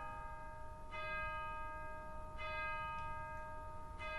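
Bell-like chime struck about every second and a half, each stroke ringing on with clear, steady overtones.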